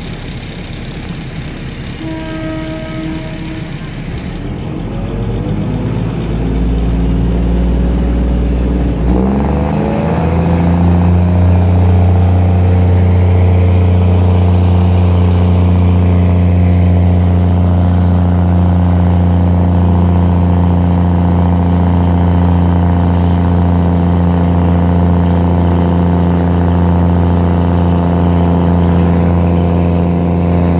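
Diesel train engine revving up as the train pulls away from a station, its pitch climbing for several seconds, then running steadily and loudly under power. A short pitched tone sounds about two seconds in.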